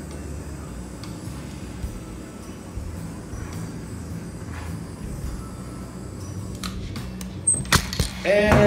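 Handheld butane torch burning steadily as it is passed over wet poured acrylic paint, with a few sharp knocks and clicks near the end.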